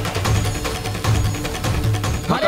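Background score music: a low pulsing bass note under sustained higher tones, with quick light ticks running through it.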